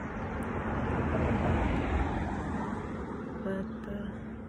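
A car driving past, its road noise swelling to a peak about halfway through and then fading.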